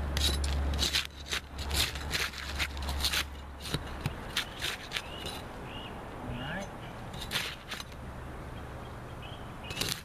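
Steel flat pry bar scraping and prying under asphalt shingles: a run of short scrapes and clicks as the shingles are worked loose to get at the roofing nails.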